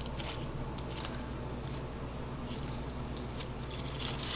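Faint rustling and soft ticks of strawberry leaves being handled, a few scattered touches over a steady low hum.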